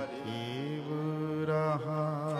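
Sikh kirtan: a male voice holds a long, slowly bending sung note over steady harmonium accompaniment, with no tabla strokes.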